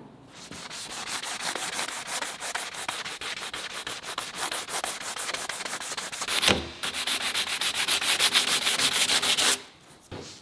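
Sandpaper rubbed by hand in quick back-and-forth strokes over a carbon fibre panel, scuffing the bonding surface so the epoxy adhesive can grip. The strokes pause briefly with a thump about six and a half seconds in, resume louder, and stop suddenly just before the end.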